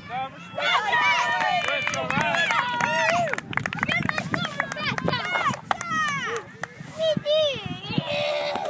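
Many high voices of children and adults shouting and calling out at once during a youth soccer game, with long held shouts early on and scattered sharp clicks.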